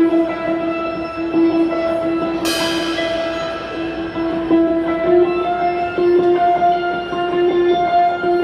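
Live instrumental electric guitar and drum kit: the guitar holds a long, steady note over the drummer's cymbal playing, with a cymbal crash about two and a half seconds in.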